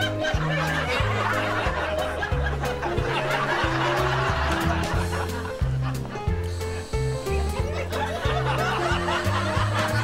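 Light comedic background music with short bass notes in a steady rhythm, under a laugh track of a crowd laughing throughout.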